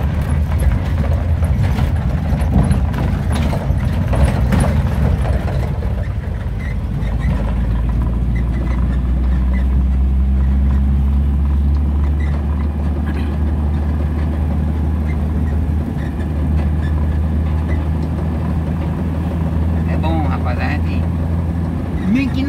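Car engine and road noise heard from inside the cabin while driving, a steady low hum that settles into an even drone about seven seconds in.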